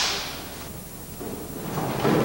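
A film clapperboard snapping shut right at the start, its echo in a large hall fading over about half a second, followed by quiet room noise.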